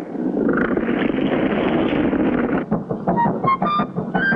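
A steady rushing sound of a motorboat moving through water, with no clear engine note. About two and a half seconds in it gives way to a music cue of short, quick notes stepping upward.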